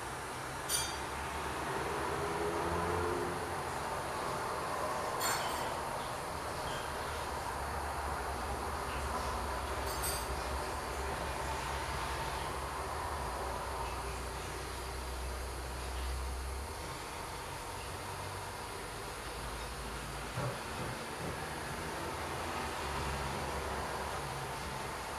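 A steady low rumble of background noise, with three short sharp clicks about one, five and ten seconds in.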